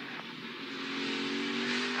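NASCAR Xfinity Series stock car's V8 engine heard through the in-car camera, running with a steady engine note that grows gradually louder.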